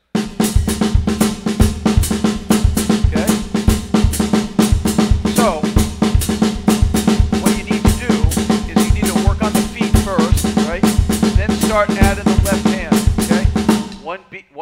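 Drum kit playing a steady Latin independence groove: a cascara pattern played with the left hand on the snare drum, over a 2-3 son clave in the left foot and a bombo pattern on the bass drum. It starts abruptly and runs as an even stream of strokes until it stops right at the end.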